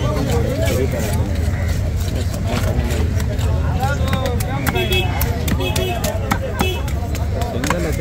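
Background voices chattering over a steady low rumble of traffic, with a cluster of sharp scraping and clicking strokes in the middle as a large curved fish-cutting knife works along the back of a big fish.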